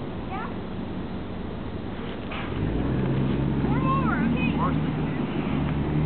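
Street traffic, with a vehicle engine's low hum coming in about halfway through and holding loud.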